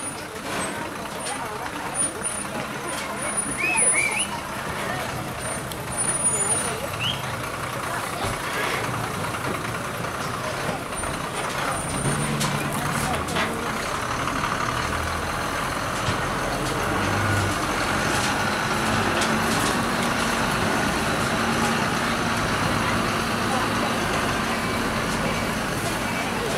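Heavy Ashok Leyland truck's diesel engine running as it drives off along a rough track, the engine coming up louder about halfway through and then holding steady, with people talking.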